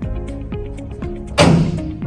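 Background music with a steady beat, and one loud knock about a second and a half in, with a short ring after it. The knock comes from the metal casket's foot end as the bolts are undone with a casket key.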